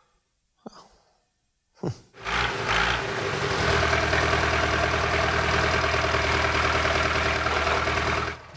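Fiat 880 DT tractor's diesel engine running steadily at idle, starting abruptly about two seconds in.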